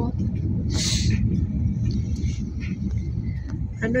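Steady low rumble of a moving car heard from inside the cabin: engine and road noise, with a short hiss about a second in.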